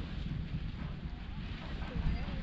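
Wind buffeting the camera microphone: a steady low rumble.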